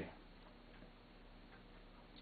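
Near silence: quiet room tone with a faint steady low hum and a few faint ticks.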